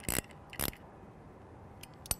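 Two short metallic clicks about half a second apart as an Allen key turns the bolt on a Mimosa B24 mount, tightening a joint that had been loose.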